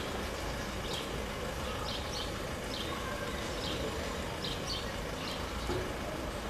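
Outdoor ambience: a steady low hum of distant traffic, with small birds chirping briefly and faintly every second or so.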